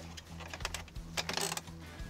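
A few light clicks and knocks of hard plastic as a truck's instrument cluster is handled and fitted into the dash opening, over a low steady hum.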